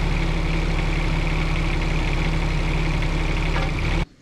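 Bobcat E10 mini excavator's diesel engine running steadily while the bucket is curled out to dump, with a steady high whine above the engine note.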